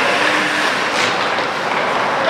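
Ice hockey play on a rink: skate blades scraping the ice as a steady hiss, with a single sharp click about a second in and faint shouts.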